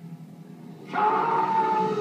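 A man's long, drawn-out yell of "Khan!" from a film, played through a television's speakers: it comes in suddenly about a second in, loud and held at one pitch, then trails off.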